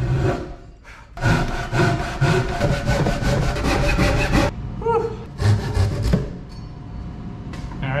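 Ryoba Japanese pull saw cross-cutting the end of a glued-up wooden slab. Fast back-and-forth strokes start about a second in and run for about three seconds. A few more strokes follow shortly after, and then it quietens near the end.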